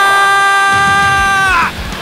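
A sports announcer's long, excited shout held on one vowel at a steady high pitch, calling a diving catch at the outfield fence; the voice drops in pitch and breaks off about a second and a half in.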